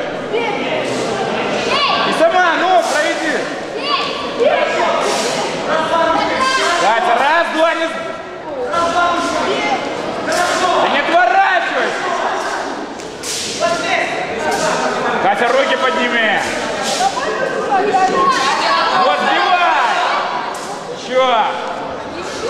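Several voices calling out and shouting over one another, echoing in a large hall, with scattered sharp thuds of gloved punches and kicks landing.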